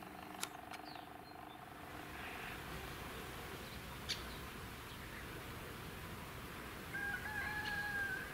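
A distant rooster crowing, faint over quiet outdoor background noise, with one wavering crow near the end.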